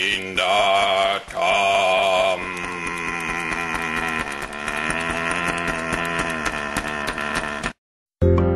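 A man's voice intoning a long, wavering chant-like note: two short breaks in the first two seconds, then one note held as a hum until it cuts off suddenly just before the end.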